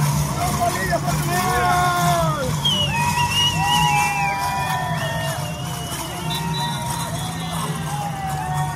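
Street parade: voices shouting and calling, with whistle-like held notes, over music and a steady low hum.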